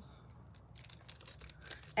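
Small clear plastic bag crinkling faintly as fingers work it open, with a scatter of light crackles that grows busier in the second half.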